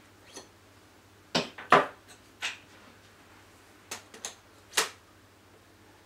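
An eyepiece being pulled out of a Celestron spotting scope's angled diagonal and a larger eyepiece pushed in. About seven short clicks and knocks are spread over several seconds, with a pair close together about a second and a half in.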